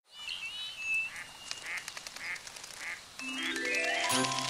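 Cartoon duck quacking, followed by a row of soft, evenly spaced sounds about twice a second; near the end a quick rising run of xylophone-like notes opens the song's music.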